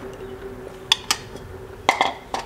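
A spoon clinking against a breakfast bowl three times as oats are eaten, two quick clinks then a louder one near the end, over a faint steady hum.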